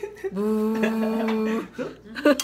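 A person's voice holding one steady, unbroken hummed tone for about a second and a quarter, starting about a third of a second in.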